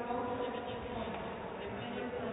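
Indistinct murmur of several overlapping voices echoing in a sports hall, steady throughout.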